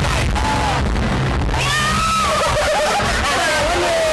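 A woman's high voice talking and breaking into a squealing laugh about two seconds in, with more voices and background music underneath.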